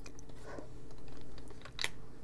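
Wooden colored pencils clicking against one another as one is picked out of a pile: a few light, separate clicks, the sharpest near the end.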